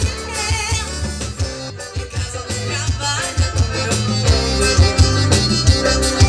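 Live forró band playing, with an accordion over electric bass and a drum kit keeping a steady beat.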